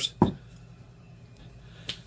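A single sharp knock as a DeWalt demolition screwdriver is picked up and bumps the work surface, followed by quiet handling and a faint click near the end.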